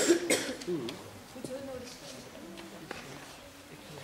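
Low, indistinct voices talking in a hall, with a few sharp louder bursts near the start.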